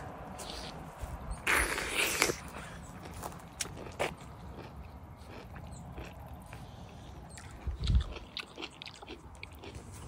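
Biting into a whole ripe mango through its skin and chewing the juicy flesh. There is a loud wet bite about one and a half seconds in, then soft chewing clicks and a low thud near the end.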